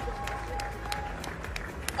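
Scattered audience applause and crowd noise, with irregular sharp claps over a faint held note.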